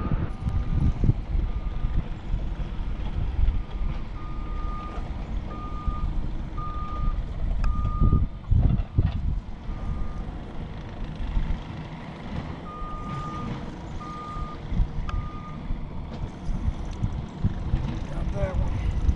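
Electronic beeping: short beeps of one high tone, coming in irregular runs with pauses between them, over a low rumble of wind and water.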